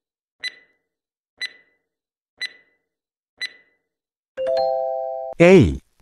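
Quiz countdown timer sound effect: short high electronic ticks, one a second, then a steady chime-like tone about a second long near the end, signalling that time is up.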